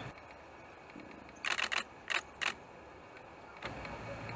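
Camera shutter firing: a quick burst of clicks about a second and a half in, followed by a few more single clicks.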